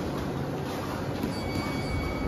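Steady rushing noise of a running fan, even and unbroken.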